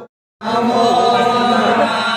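A group of male voices chanting together during an aarti. The sound cuts out completely for a fraction of a second right at the start, then the chanting comes back.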